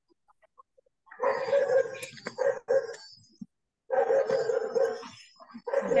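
A dog barking in runs of quick barks, heard through an open microphone on a video call; the barking starts about a second in and comes again in a second run after a short pause.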